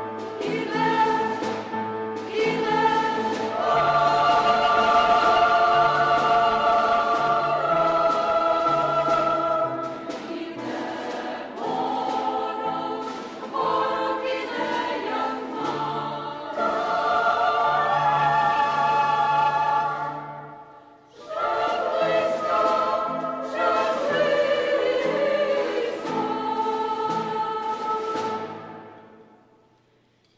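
Women's choir of Basilian nuns singing a sacred choral piece in several parts, holding long chords. The singing dies away about two-thirds of the way through and then starts again.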